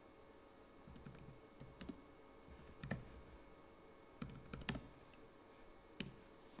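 Faint keystrokes on a computer keyboard, typing a short line of text in scattered clusters of clicks.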